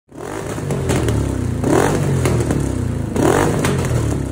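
1990 Yamaha V-Max 1200's V4 engine running at the exhaust, blipped twice about a second and a half apart, with a few sharp pops from the exhaust in between.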